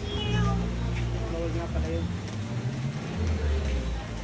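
Tiger vocalizing in low, drawn-out calls: one long call, then a shorter, deeper one near the end.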